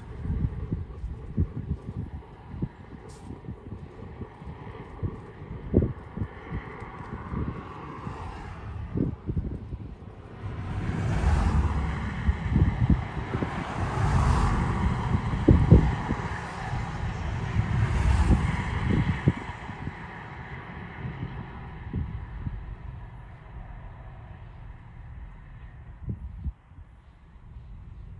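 Wind buffeting the microphone in gusts, with road traffic swelling up and passing by in the middle of the stretch, loudest about halfway through, then fading to a quieter wind hush near the end.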